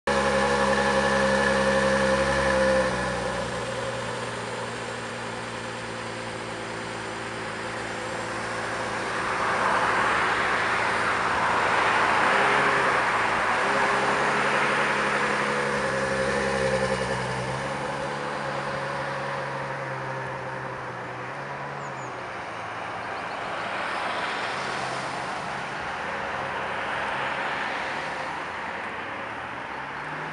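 Ferrari F12's 6.3-litre V12 idling at the exhaust while it is smoking with fumes, a steady multi-tone drone. The idle is faster and louder at first and drops about three seconds in, with a rushing noise swelling up over it in the middle.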